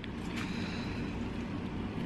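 Steady low background hum, with a few faint scrapes early on from a fork raking the strands out of a roasted spaghetti squash shell.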